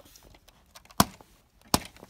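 Two sharp plastic clicks from LEGO pieces being handled, about a second in and again near the end.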